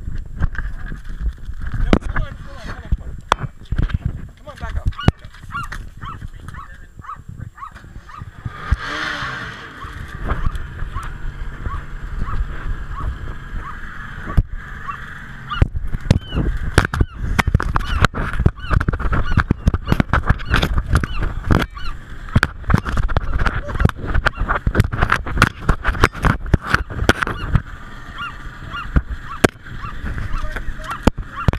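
Brown pelican mouthing the GoPro at close range: its bill knocks, scrapes and bumps against the camera housing, many times and most densely in the second half, with its wings flapping against the microphone. Behind it run repeated short honk-like calls.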